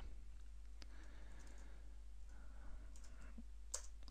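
Quiet room tone with a steady low hum and a faint computer mouse click about a second in.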